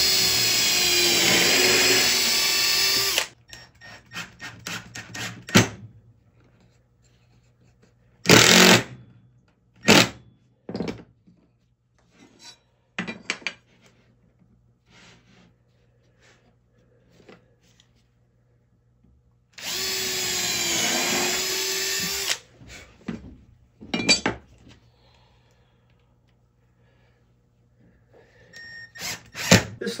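A power drill boring pilot holes into a wooden strip. There are two runs of about three seconds each, and the motor pitch dips as the bit bites into the wood. Between them come a few short trigger bursts and light knocks.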